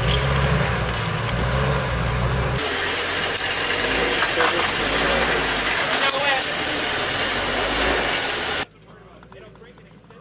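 Wiesel light tracked armoured vehicle's diesel engine running loud and steady as the vehicle drives into a helicopter's cargo hold, echoing in the enclosed cabin. Near the end the sound drops suddenly to a much quieter background.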